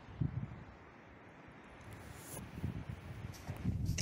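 Wind buffeting the camera microphone at an exposed clifftop: an uneven, gusting low rumble.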